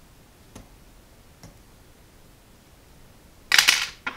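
Small fly-tying tools being handled while the thread head of a streamer is whip finished: two faint clicks early on, then a loud, short clatter near the end.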